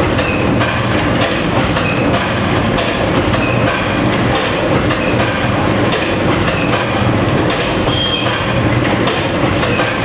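Two automatic water-pouch packing machines running, with a steady mechanical clatter and regular clacks about three every two seconds.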